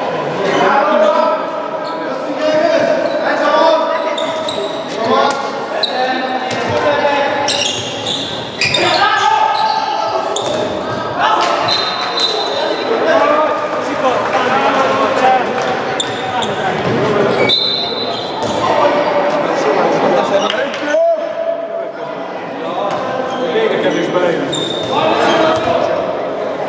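A handball bouncing and thudding on a wooden sports-hall floor during play, with players calling out to each other, echoing in a large gym hall.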